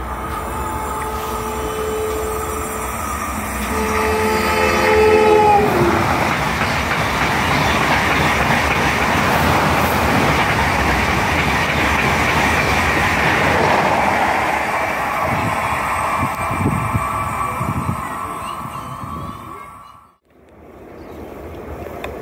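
Long-distance passenger train passing a station platform: two long horn blasts whose pitch drops as it draws level, then a loud, steady rushing of wheels on rail and air for about twelve seconds, fading away before the sound cuts off abruptly.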